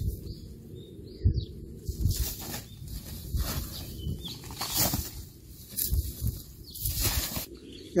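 Gloved hands working in a fabric grow bag of potting soil and dry pine-needle mulch: a series of brief rustles and scrapes over soft low thuds.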